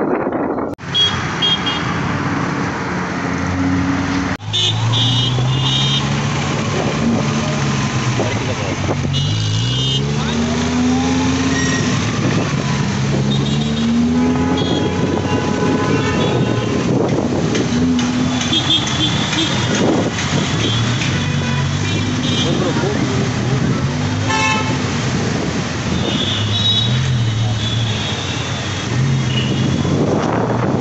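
Busy road traffic with vehicle horns honking again and again, and engine notes rising and falling.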